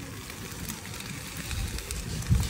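Soft, steady hiss with a few faint crackles, over a low rumble: covered pans of eggplant kebab sizzling on glowing charcoal.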